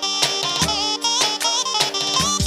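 Live Balkan wedding band playing an instrumental dance passage: a wavering, ornamented lead melody over a steady low beat.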